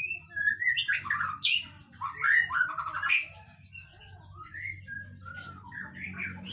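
Young male white-rumped shama (murai batu) singing a varied run of quick chirps and short whistled notes. The notes are loudest and packed closest in the first three seconds, then come softer and more scattered.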